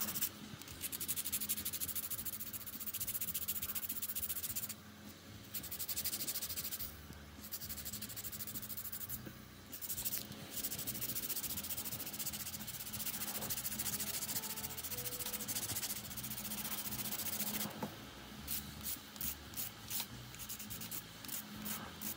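Hand nail file being worked briskly back and forth against plastic nail tips, a dense run of quick scratchy strokes broken by a few short pauses. Near the end the strokes come separately, about two or three a second.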